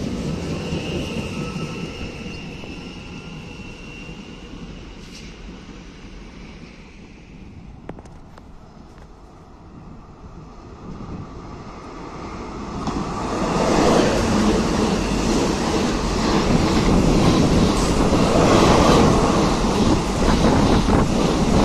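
Francilien electric multiple unit moving off, its steady motor whine and running noise fading away; after a quieter stretch, a Nomad double-deck TER electric train arrives and passes close by from about thirteen seconds in, its rolling noise loud.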